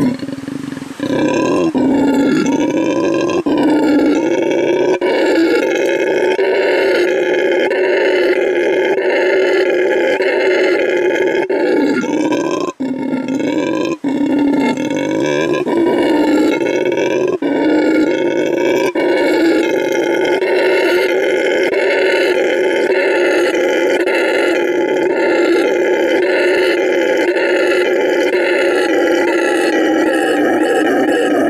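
Howler monkeys howling: one loud, continuous howl that swells and dips in a steady pulse, with two brief breaks about halfway through.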